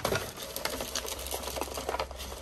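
Rapid, irregular light clicks and taps of small plastic hand-sanitizer bottles being handled on a marble countertop.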